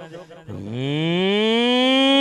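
A man's voice over the PA making one long, loud drawn-out vocal sound that starts about half a second in, slides up from a low pitch and then holds steady.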